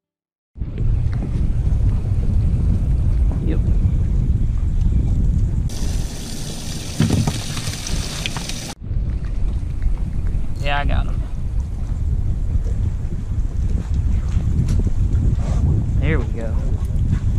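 Wind buffeting the microphone on an open fishing boat, a steady low rumble that cuts in suddenly about half a second in. A brighter hiss joins for about three seconds in the middle and stops at a sudden cut.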